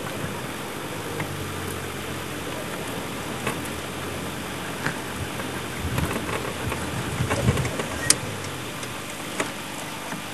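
Steady hiss with a low hum from a game-drive vehicle's engine idling, and a few faint knocks and rustles about six to eight seconds in.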